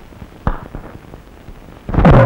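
A sharp knock about half a second in, followed by a few lighter clicks: a door bolt being slid shut on a wooden door. Loud music comes in at the very end.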